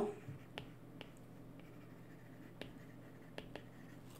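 Faint, scattered clicks of a stylus tapping and writing on a tablet screen, about five over a few seconds, over a low steady hum.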